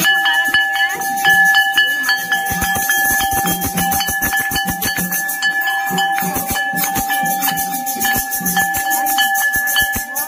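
A temple bell rung rapidly and without pause, its clapper striking several times a second so that a steady metallic ringing tone holds almost throughout, over the voices of a crowd.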